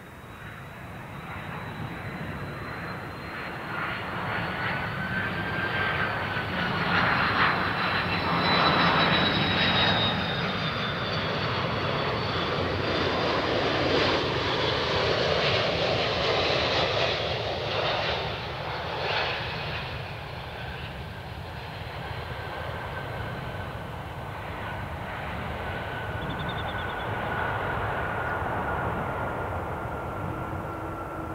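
Airbus A330-303 with GE CF6-80E1A3 turbofans landing. A high fan whine slowly falls in pitch as the jet nears and passes, the noise builds to its loudest about eight seconds in, and a rushing engine noise carries through the touchdown and rollout before easing to a quieter steady whine.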